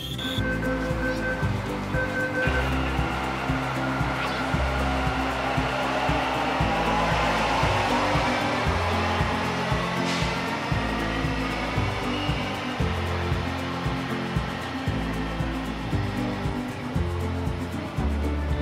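Metro train pulling out of an underground station into the tunnel: a rushing noise with an electric whine sliding in pitch, swelling through the middle and fading as it goes. Two short electronic beeps sound at the start, and background music runs underneath.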